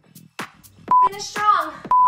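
Workout interval timer's countdown beeps: two short identical electronic tones about a second apart, counting down the last seconds of an exercise interval, over dance music with singing.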